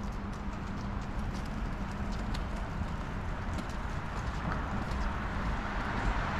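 Footsteps on a paved footpath, about two steps a second, over steady street traffic noise and a low hum; a vehicle approaches near the end.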